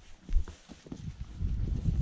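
Wind buffeting the microphone, with climbing boots scuffing and gear knocking on rock; the sharpest knock comes about a third of a second in.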